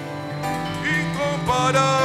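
Live worship band music with sustained chords, and a singing voice coming in about a second in.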